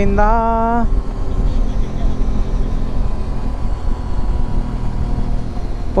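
Motorcycle cruising at road speed: a steady engine drone under a thick rush of wind and road noise.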